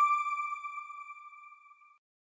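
A single bright electronic chime ringing on one steady pitch and fading away to nothing near the end: the sign-off sound of a news channel's logo end card.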